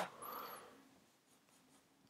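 Dry-erase marker writing briefly on a whiteboard: a faint scratchy stroke in the first second, then near silence.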